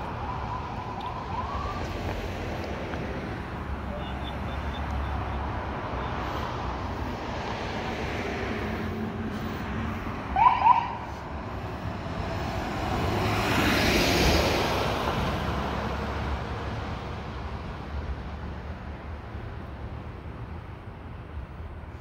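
Steady low traffic rumble at a roadside stop. A brief rising police-siren chirp, the loudest sound, comes about ten seconds in, after a fainter rising tone at the start. A passing vehicle swells and fades a few seconds later.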